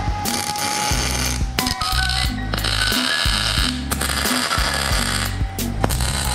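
MIG welder tack-welding a steel plate onto a trailer ramp: a crackling hiss in about four runs of a second or so each, with short pauses between them. Background music plays underneath.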